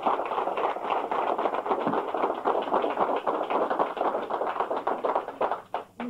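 Audience applauding: a dense patter of many hands clapping that dies away just before the end.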